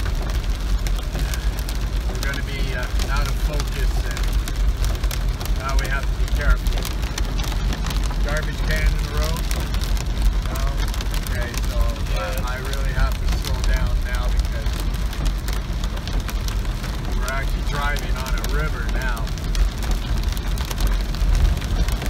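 Vehicle cabin noise while driving in heavy rain: a steady low rumble of engine and tyres on the wet road, with rain hitting the roof and windshield. Faint voices are mixed in underneath.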